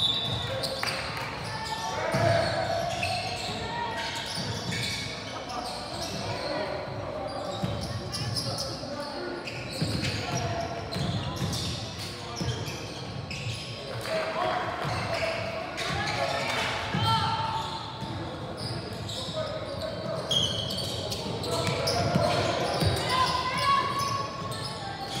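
Basketball dribbling and bouncing on a hardwood gym floor during a game, with low thuds coming again and again, mixed with indistinct voices calling across the gymnasium.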